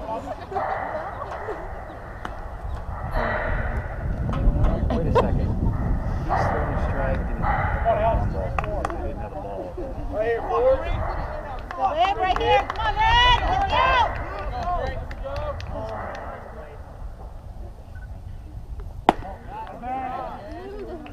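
Indistinct voices of players and spectators calling out across a baseball field, with wind rumbling on the microphone for much of the time. A single sharp pop comes near the end as a pitch smacks into the catcher's mitt.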